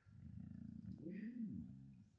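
Siberian husky's faint, low grumbling 'talking' vocalization, a rumble with a pitched rise and fall about a second in: the dog voicing its own 'roll over' instead of doing the trick.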